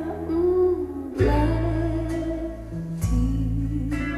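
Recorded music played through Focal Grand Utopia EM EVO loudspeakers: a slow ballad with a female voice holding low notes over plucked guitar, and deep bass notes that come in about a second in and again near three seconds.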